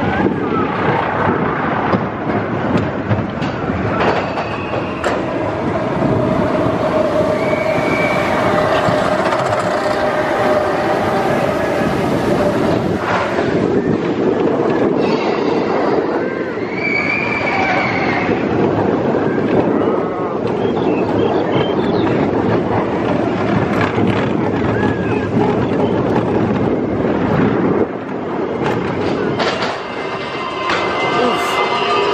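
Roller coaster train rolling along its steel track, with steady wheel rumble and rattle; the wheels squeal on curves about 8 and 17 seconds in.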